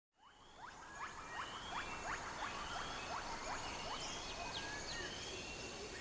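Forest ambience fading in: many short, quick calls sweeping in pitch, repeating every few tenths of a second over a faint steady hiss.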